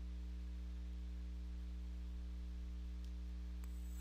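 Steady low electrical mains hum with faint hiss from the recording microphone, with two faint ticks near the end.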